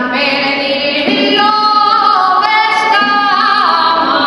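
A woman singing a Valencian albà into a microphone, unaccompanied and solo, holding long notes that bend and slide from one pitch to the next.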